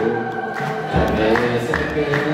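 A man's voice singing through a microphone, holding long notes with slow changes in pitch.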